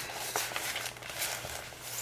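Faint rustling of a diamond-painting canvas and its plastic packaging being handled, with a few soft ticks.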